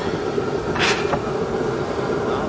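A steady mechanical hum, like an engine or motor running, with one short hiss about a second in.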